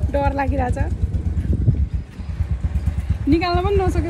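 A woman's voice in two short stretches, near the start and near the end, over a steady low rumble.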